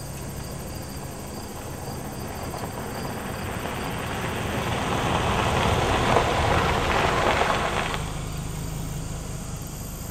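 A pickup truck approaches on a gravel road and passes close by, its tyres and engine swelling to loudest about six seconds in, then cut off abruptly about two seconds later. Insects chirp steadily underneath.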